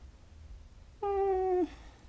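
A short, high-pitched vocal call, held on one pitch for about half a second and then dropping away, about a second in.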